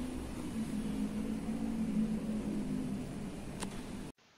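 Steady machine hum over a low hiss, with a single sharp click near the end.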